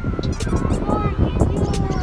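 Several small dogs yapping and barking in short, high-pitched bursts, over a general clatter and hubbub of a crowd.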